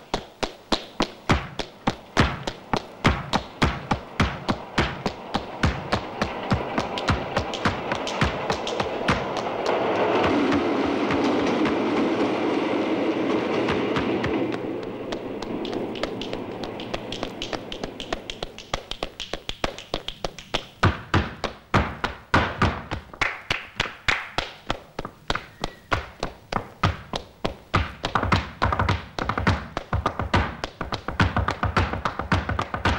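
Flamenco zapateado: a dancer's shoes stamping fast, rhythmic heel and toe strikes on wooden boards. In the middle the stamping thins out under a rushing noise that swells and fades, then the fast regular stamping comes back strongly.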